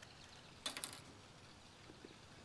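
Faint clicks and scrapes of a razor blade trimming thin, loose plastic on a truck's A-pillar trim panel, in a short cluster under a second in; otherwise quiet.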